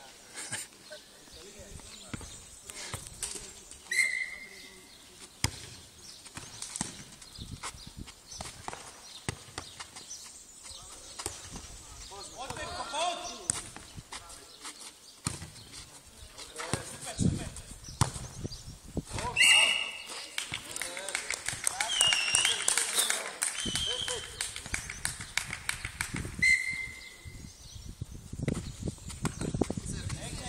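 A football being kicked and bouncing on a clay court in a futnet rally, a series of short sharp thuds, with players' voices calling out now and then.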